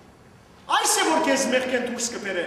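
A man speaking in Armenian into a microphone, starting after a short pause less than a second in.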